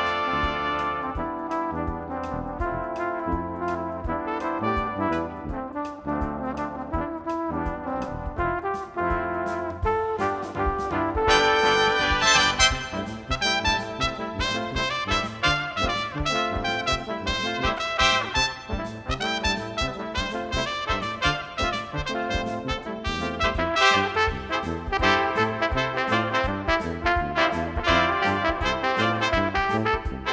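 Brass ensemble of trumpets, trombones and flugelhorns, with a flugelhorn playing the tuba's bass line, performing an upbeat pop arrangement with a steady beat. The band gets louder and brighter about eleven seconds in.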